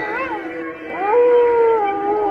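A wolf-like howl: a short rising-and-falling yelp, then a long drawn-out howl starting about a second in that slides slowly down in pitch.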